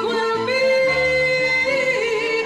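A male singer holding long, high sung notes over a sustained accompaniment of strings and bass, in a live performance of a quiet ballad.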